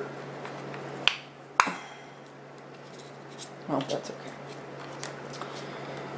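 Two sharp clicks about half a second apart, about a second in, as a wooden dowel and ping-pong ball are handled at a craft table. A steady low hum runs underneath.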